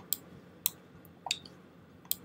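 Three sharp, separate clicks from a computer mouse or keyboard, about half a second apart, made while the price chart is zoomed out on screen.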